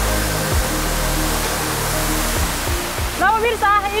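Steady rush of a waterfall, water cascading over rock, under background music with a low bass line; a woman's voice starts near the end.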